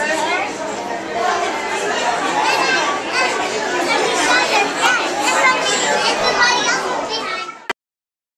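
Overlapping chatter of children's and adults' voices in a crowded room, no single speaker clear, cutting off suddenly near the end.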